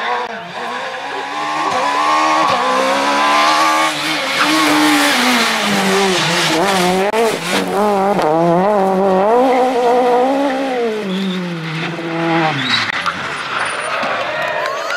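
A Citroën C2 S1600 rally car's high-revving four-cylinder engine at full throttle. Its pitch climbs and drops over and over through gear changes and lifts as the car passes. Near the end the pitch falls away as the car leaves.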